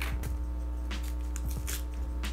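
Brown paper parcel wrapping being torn and crinkled by hand in several short rips, over steady background music.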